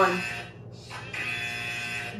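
An electronic buzzer sounds twice, each buzz about a second long with a short gap between, starting and stopping abruptly.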